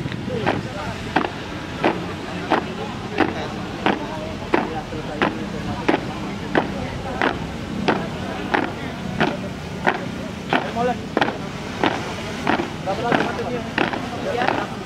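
A steady marching cadence of sharp, even strikes, about one and a half per second, with crowd chatter behind it.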